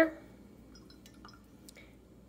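Mostly quiet, with a few faint small clicks and drips of water around a glass jar of painting water.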